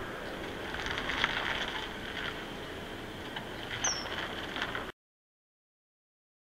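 Steady outdoor background hiss with scattered small ticks, and one brief high-pitched bird chirp falling in pitch about four seconds in. The sound cuts off abruptly just before the end.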